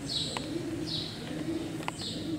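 Birds calling: a low cooing in short phrases under a high, falling chirp that comes twice, about three-quarters of a second apart.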